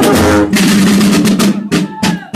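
Marching band playing: side drums beaten under a tune from brass instruments. Near the end the drumming breaks into a few separate loud strokes.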